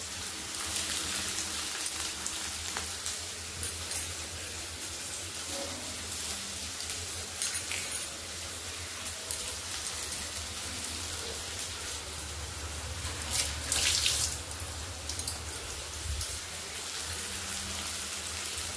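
Cooking oil sizzling steadily in a kadhai, with scattered light clicks and a brief louder surge of hiss about three-quarters of the way through.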